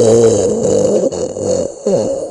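A man making a drawn-out, low guttural vocal noise, held steady for about a second and a half before cutting off, with another short vocal sound starting near the end.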